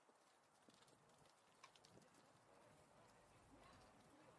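Near silence: faint rolling noise and light clicks from a bicycle being ridden.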